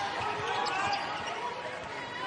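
A basketball dribbling on a hardwood court during live play, with sneakers squeaking on the floor.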